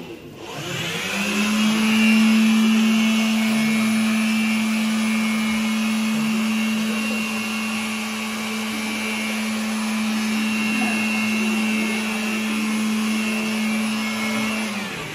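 Handheld electric blower starting up about a second in and then running steadily, a constant motor hum with air rushing out through a cone nozzle.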